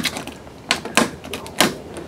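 Fingernails picking at the protective plastic film on a Furion stereo's faceplate, making three sharp clicks.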